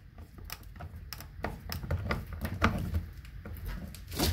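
Screwdriver turning and tightening the neutral terminal screw of a 50-amp range receptacle: irregular small metal clicks and scrapes over a low handling rumble.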